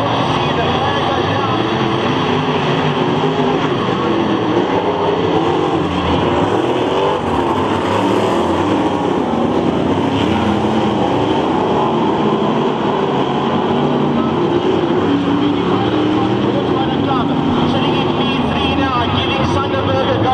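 A pack of V8 dirt-track race cars running at race pace, a loud steady din of engines whose pitch keeps rising and falling as drivers accelerate and lift through the turns.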